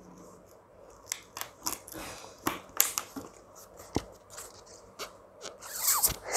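Thin plastic water bottle crinkling and clicking in the hands as a rubber balloon is pushed inside and stretched over its mouth, in scattered small crackles and taps. Near the end, a short burst of breath as she starts blowing into the balloon through the bottle's neck.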